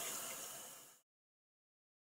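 Kitchen tap running a thin stream into a stainless steel sink, a steady hiss that fades out over the first second, then dead silence where the recording cuts off.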